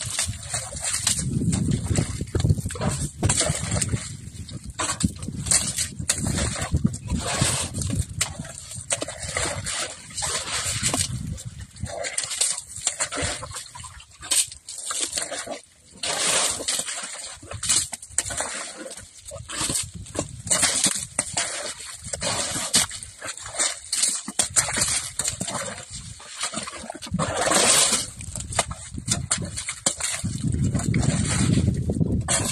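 Young Asian elephant digging in the earth with its trunk and feet, making an irregular run of scuffs, scrapes and soft thuds of soil being dug and tossed.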